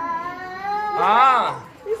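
A small boy crying: a drawn-out wail, then a louder, wavering wail about a second in.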